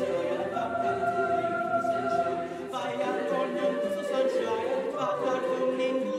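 Mixed high school choir singing a cappella: held chords in several voice parts, moving to new notes about three seconds in.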